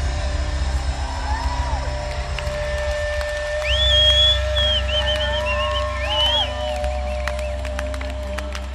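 Electric rock band holding a closing chord, a low bass note and a steady guitar tone ringing on, while a large live crowd cheers and whistles over it. A few sharp claps come near the end as the chord fades.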